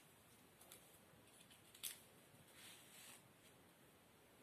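Near silence, with the soft rustle of a nylon strap being wrapped around a dog's foreleg and one faint sharp click about two seconds in.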